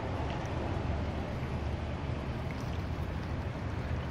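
Steady low rumble of outdoor background noise, with no clear single event standing out.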